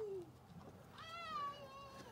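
A faint high-pitched animal call, about a second long in the second half, sliding slightly down in pitch.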